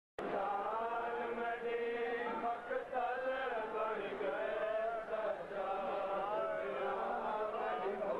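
Men's voices chanting a noha, a Shia mourning lament, in long held and wavering lines.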